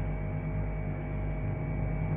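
Steady low electrical hum with a faint hiss.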